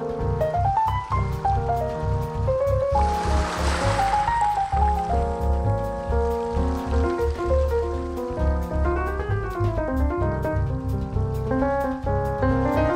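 Instrumental piano jazz with bass notes and a steady light tick of percussion. About three seconds in, a wash of ocean surf swells up and fades over about two seconds.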